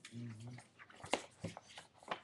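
A sheet of paper being handled: soft rustling with a few short, sharp clicks, after a brief low hum of a voice near the start.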